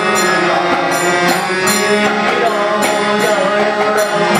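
Harmonium playing a devotional prayer song, with a man's voice singing along and a regular jingling percussion beat keeping time.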